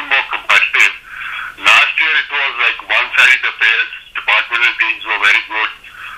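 A person talking continuously with a narrow, telephone-like sound.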